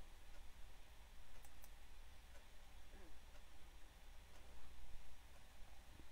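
Quiet room tone with a steady low hum and a few faint clicks, two of them close together about a second and a half in.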